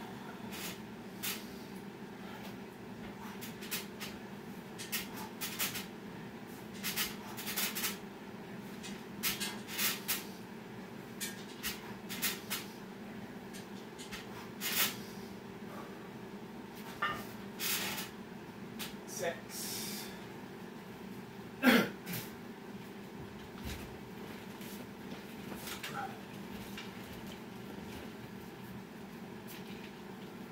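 A man's forceful breaths and grunts of effort during an exercise set: many short sharp exhales over most of the first two-thirds, then one loud groan falling in pitch, with a steady low hum behind.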